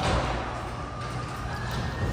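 Ceiling-mounted electric garage door opener starting up and lifting the sectional garage door: a steady motor hum with a faint whine that rises gently in pitch, beginning suddenly.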